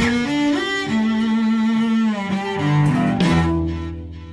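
A trio of cellos, one acoustic, one electric and one carbon-fibre, bowing a melody with vibrato over sustained low notes. A little over three seconds in they close on a held final chord that dies away.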